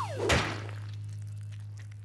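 A falling whistle gliding down in pitch, then a thud about a third of a second in as a heavy-fabric egg-drop parachute rig hits a concrete floor, followed by a steady low hum.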